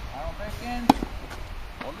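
A tennis racket strikes a ball with one sharp, loud crack a little under a second in, with fainter knocks of ball or racket around it. A short voiced sound comes just before the hit.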